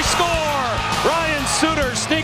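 Excited play-by-play goal call, one long drawn-out 'score!', over background music.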